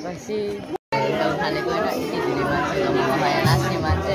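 Many voices chattering together under a pavilion, after a short cut of silence just under a second in. Near the end a drum beat comes in as a bhajan starts up.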